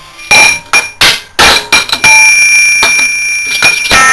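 Steel workpieces knocked together: a filter-drier end plate and a steel pin clink with several sharp knocks, then one strike about two seconds in sets the plate ringing like a bell for about two seconds.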